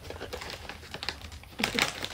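Goldendoodle right up against the microphone: quick, irregular clicks and rustles, with a louder cluster near the end.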